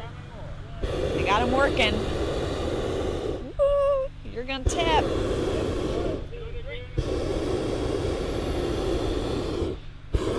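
Hot air balloon propane burner firing in long blasts of steady noise, broken by short pauses about a second in, near the middle and again about seven seconds in, with people's voices heard in the pauses.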